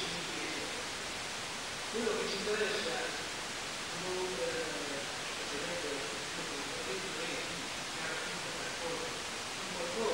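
Faint, indistinct speech over a steady hiss from the old recording.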